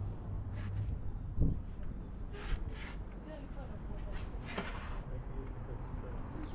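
Faint voices of people talking at a distance, over a low outdoor rumble. A single thump about one and a half seconds in, and a few short bursts of noise later.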